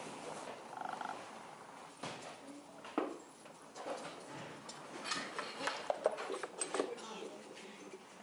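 Containers of glaze being handled at a studio shelf: a scatter of small knocks and clinks, busiest in the second half, with quiet voices in the room.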